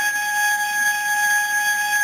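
Music: one long, steady high note held on a flute.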